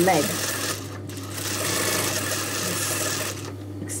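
Sewing machine stitching in two runs: a short run that breaks off about a second in, then a longer run that stops shortly before the end.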